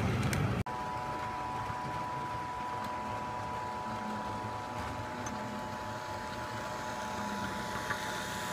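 HO scale model trains running on track. First comes a brief rumble with clicks as cars roll past, cut off abruptly. Then a steady high whine from an approaching model locomotive's motor and gears, over faint wheel-on-rail noise, growing a little louder as it nears.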